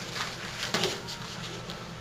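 Quiet hall room noise with a few soft taps and rustles, loudest about three-quarters of a second in: children's bare feet and uniforms moving on a mat as they finish a martial-arts technique.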